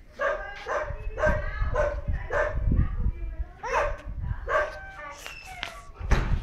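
A dog barking repeatedly: about ten short, fairly high barks in quick succession, roughly two a second.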